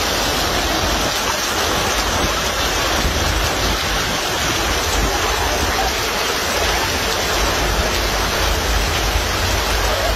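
Heavy rain mixed with hail pouring down, a dense steady hiss of water striking the ground and the train, with a low rumble underneath.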